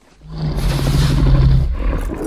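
Movie dragon roaring, a creature sound effect: one long, low roar that swells up quickly, holds a steady pitch, and breaks off just before the end.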